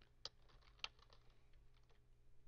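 A few faint keystrokes on a computer keyboard, typing in short, sparse taps, the two clearest about a quarter second and just under a second in.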